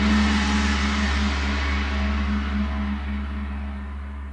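A single deep, gong-like hit used as a closing sound: a low rumble with a steady ringing tone that slowly fades out.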